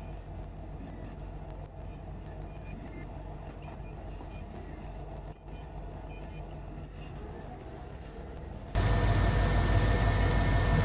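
Forklift engine running steadily as it moves stacked plastic bulk bins. About nine seconds in the sound jumps suddenly louder: the engine heard up close from inside the forklift's cab, with rain.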